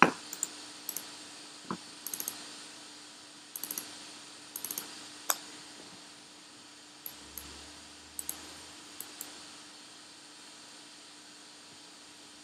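Computer mouse and keyboard clicks: short, faint clicks, some single and some in quick runs of two or three, over a faint steady hum.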